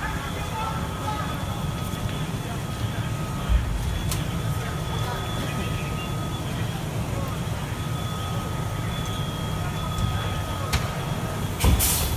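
Steady low rumble of a parked fire truck's diesel engine running, with a short thump about three and a half seconds in.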